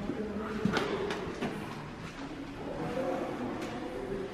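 A few light footsteps on a wooden floor in a small room, over faint background sound.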